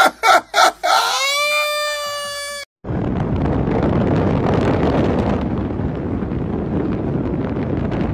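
A man laughing in short bursts, then a long high-pitched held cry that cuts off abruptly. After that, steady wind and road noise from an open-top sports car driving along.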